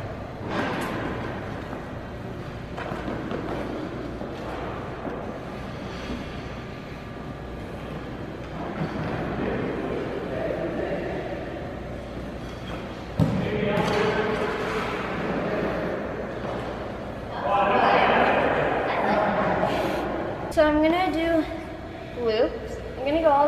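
Figure skate blades gliding and scraping on rink ice, a steady rasping hiss, with a sudden knock about thirteen seconds in and a louder stretch of scraping a few seconds before the end.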